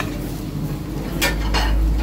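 Metal skillet clanking against the gas range and other pans as a cook works a pan of pasta, with two sharp clanks a little past the middle. A steady low rumble sits underneath and grows toward the end.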